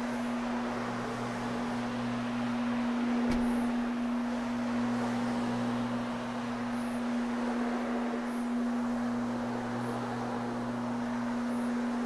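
Rotary floor machine running with a steady hum while its microfibre bonnet pad with scrub strips spins across loop olefin carpet. A lower note fades in and out as the machine is steered, and there is a single click about three seconds in.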